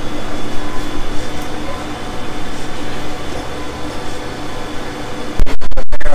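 Steady hum with a few faint steady tones from a large-format sublimation printer running. Near the end a much louder rough noise starts suddenly.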